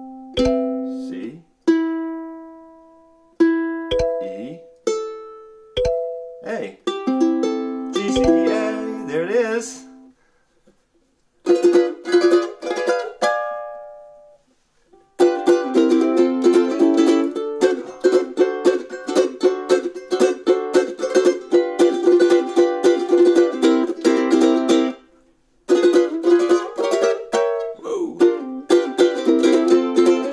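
High-G soprano ukulele: open strings plucked one at a time and left to ring, rechecking each string's tuning, then a few strummed chords. After a short pause, a steady strummed rhythm begins.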